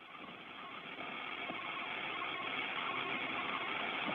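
Steady hiss of an open communications audio channel with no one speaking. It fades in and grows gradually louder.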